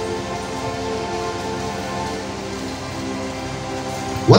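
Soft background music of sustained, held chords that change slowly, under a steady hiss.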